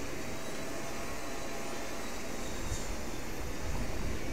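Steady, distant engine hum across an airfield, with a low wind rumble on the microphone that grows near the end.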